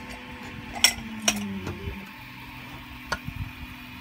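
3D-printed plastic parts being pulled apart and handled, giving a few sharp clicks and light knocks: two close together about a second in and another about three seconds in.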